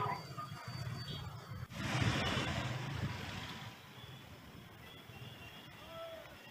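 Street traffic noise, with a vehicle passing more loudly about two seconds in.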